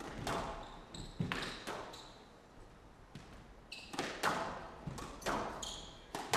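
A squash rally: sharp, echoing cracks of the ball struck by rackets and hitting the court walls at an irregular pace, with a lull in the middle and a quicker run of shots near the end. Short high squeaks of court shoes on the floor come in between the shots.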